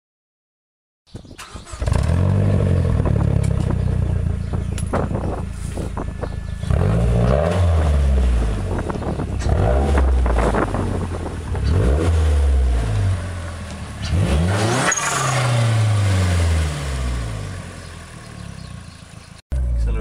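Mazdaspeed 6's turbocharged 2.3-litre four-cylinder with an aftermarket Corksport turboback exhaust, revved repeatedly: about five or six times the pitch climbs quickly and falls back toward idle. It starts about a second in.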